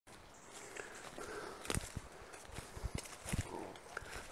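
Footsteps through woodland undergrowth, with leaves and branches rustling against the walker, and a handful of irregular thuds in the middle of the stretch.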